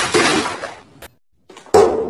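A loud, noisy crash or clatter lasting under a second and fading out, then a moment of near silence and a sudden loud thump near the end.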